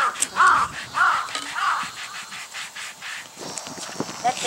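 A crow cawing, four caws about half a second apart in the first two seconds.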